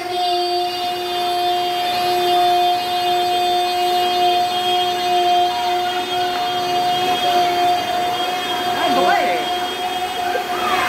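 A child's voice holding one long, steady 'ahh' note on a single breath, sung into a microphone and heard through a PA speaker. The pitch stays level throughout, and other voices come in faintly near the end.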